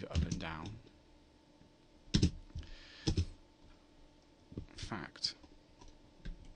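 A handful of separate sharp clicks from computer keys, typed sparsely while working in software.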